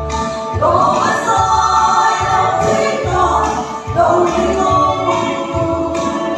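A group of five women singing a gospel song together into microphones, amplified over a low, steady pulsing beat of accompaniment.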